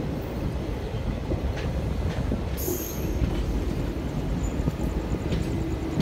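A train running on the rails, heard from on board: a steady low rumble of wheels on track, with a brief high-pitched squeal about two and a half seconds in and a steady hum coming in near the end.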